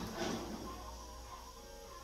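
Soft background music with a wandering melody, and a brief noise just after the start.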